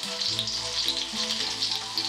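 Parsnips frying in oil in a pan, a steady sizzle, with background music of sustained notes beneath it.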